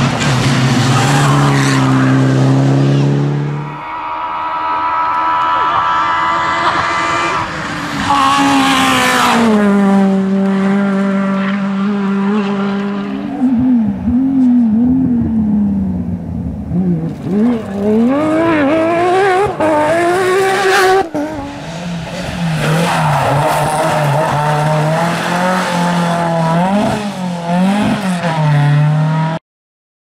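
Rally car engines passing at speed one after another, revving up and dropping back through gear changes at full load. The sound cuts off abruptly near the end.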